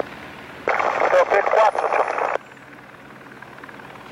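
A voice over a radio transmission: about a second and a half of Portuguese speech that starts and cuts off abruptly, over a steady low hum.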